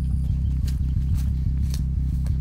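Background music: a steady synth bass line with a light beat of about two hits a second.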